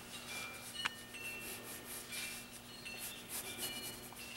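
Pencil lead scratching on a paper notepad in repeated short strokes as an outline is sketched, with a single sharp tick a little under a second in.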